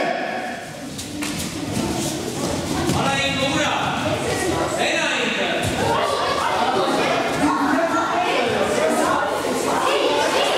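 A group of children chattering and calling out together in a large hall, with scattered thuds of bare feet on tatami mats as they move and grapple.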